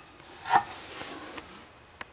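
A sharp knock with a brief metallic ring as a removed MacPherson strut is set down on the floor, about half a second in, followed by a few faint handling clicks.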